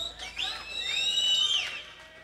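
Audience members whistling at the end of a live song: several long, piercing whistles overlap, each rising and then falling in pitch.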